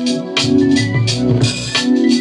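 Beat played back from a Native Instruments Maschine: held organ-like keyboard chords over a steady drum pattern of low kicks and crisp hits.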